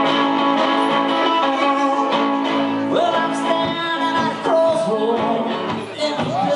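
Acoustic guitar played live in a blues-folk style, with a held melody line over it that bends in pitch from about halfway through.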